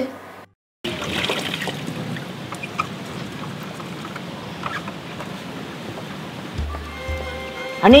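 Water trickling and splashing with faint clicks as a motorcycle is washed by hand. Music with a low pulse comes in near the end.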